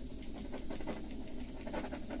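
Small handheld butane torch burning with a steady hiss as its flame is passed over wet poured acrylic paint to pop surface bubbles.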